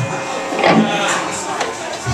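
Indistinct talk and room chatter, with some faint instrument sound underneath.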